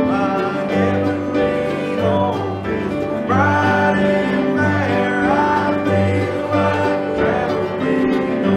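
A bluegrass-style gospel song played live on acoustic guitar, mandolin and upright bass, with a man singing lead. The upright bass plays steady low notes under it.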